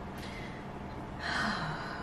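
A woman's audible breath in, about half a second long, a little past the middle, against quiet room tone.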